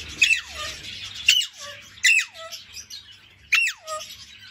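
Alexandrine parakeet giving four loud, harsh screeches, each sliding sharply down in pitch, spaced about a second apart. They are contact calls for an owner who has just left, which the bird keeps up loudly and insistently.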